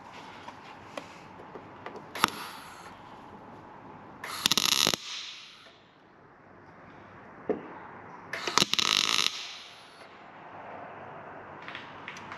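MIG welder, set to synergy mode, laying two short tack welds on a 1 mm steel repair panel: two sharp bursts, each under a second long and about four seconds apart.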